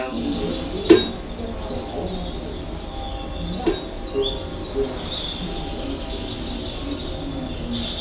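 Ambient soundscape: a steady low drone with birds chirping over it, and two brief clicks, about one and nearly four seconds in.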